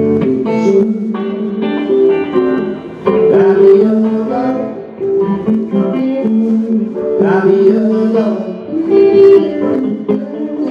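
Live band playing a blues-rock groove: electric guitar and bass guitar, loud and continuous, with a melodic line that bends in pitch twice.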